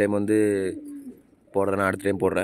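Domestic pigeons cooing: one drawn-out coo falling in pitch over the first second, then a short pause, then a second coo starting about one and a half seconds in.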